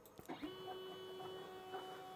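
Stepper motors driving the two horizontal axes of a DIY hot-wire CNC foam cutter, running a homing calibration toward the limit switches. A steady whine of several tones starts about half a second in, and a further tone joins about a second later.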